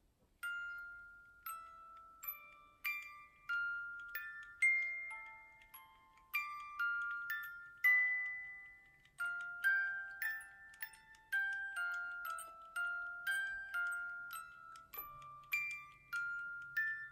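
Small hand-cranked music box playing a slow melody of single ringing metal notes, starting about half a second in.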